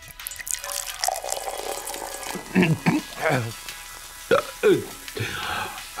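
A sip of soda drunk from a can: liquid noise for about the first two seconds, followed by a few short throaty vocal noises.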